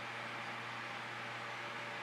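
Steady faint hiss with a constant low hum: background noise, with no distinct event.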